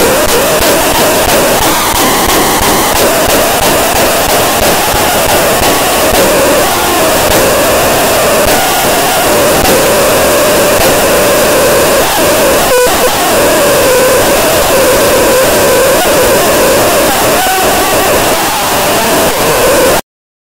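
Harsh noise music: a loud, dense wall of distorted noise with a wavering drone in the middle range and a single sharp crack about two-thirds of the way through. It stops abruptly at the end.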